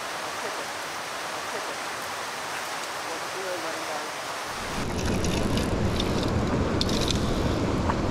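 Steady rush of a fast-flowing river over rocks. About halfway through the noise gets louder and deeper.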